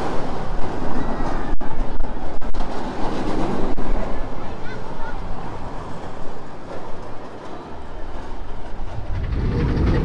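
Scorpion steel roller coaster train running along its track, a rumbling clatter of wheels on rails. It is loudest in the first few seconds, eases off, then builds again near the end.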